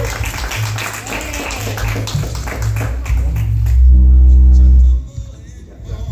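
Clapping from a small crowd over music with a pulsing bass line. About four seconds in, a loud low hum sounds for about a second and then cuts off suddenly.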